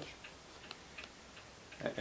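Faint light ticks in a quiet room, a few each second, with a man's voice starting up again near the end.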